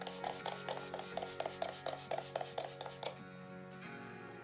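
A quick, even run of short soft strikes, about six a second, that stops a little over three seconds in, over quiet background music.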